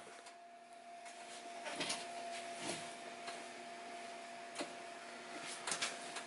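Faint rustling and a few soft scrapes and ticks of hands drawing stitching thread through a leather flap and handling the leather, over a faint steady hum.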